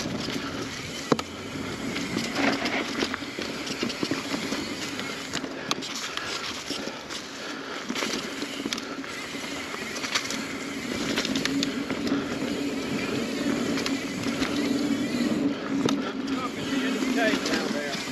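Mountain bike riding fast down a dirt singletrack, heard from on the bike: knobby tyres rolling over dirt and leaves, with the frame and chain rattling and knocking over the bumps throughout.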